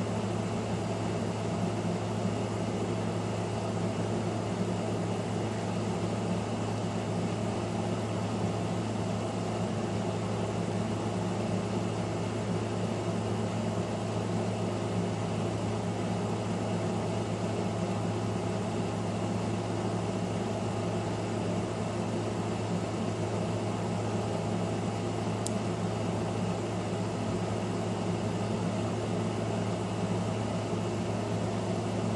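Steady low hum under an even hiss, with one faint tick late on.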